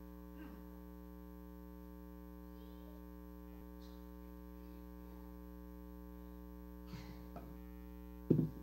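Steady electrical mains hum with many overtones that does not change, with a few faint, brief murmurs from the room.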